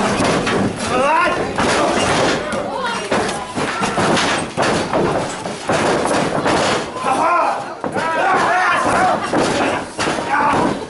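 Repeated thuds of wrestlers' bodies hitting the ring canvas, with voices shouting over them, the shouting heaviest in the second half.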